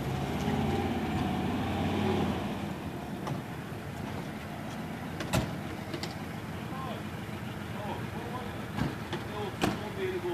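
A car engine running close by for the first two or three seconds, then dropping away, with faint voices in the distance and two sharp knocks, one about halfway through and one near the end.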